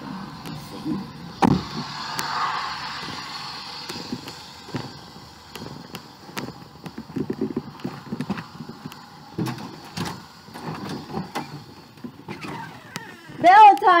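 A car door unlatching with a sharp click, followed by a couple of seconds of hissing outdoor noise. Then come irregular footsteps, rustling and knocks of someone walking and handling things, and a loud shouted call near the end.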